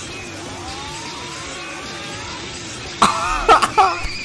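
A slow rising whine over a low, even background, then about three seconds in a loud vocal outburst, an excited cry or laugh.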